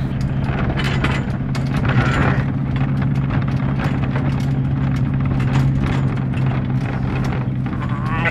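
Steady engine drone and road noise heard from inside a moving vehicle, with frequent small rattles and knocks.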